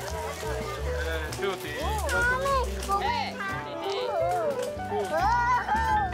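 Background music with a steady bass line, joined from about two seconds in by a high voice gliding up and down in pitch.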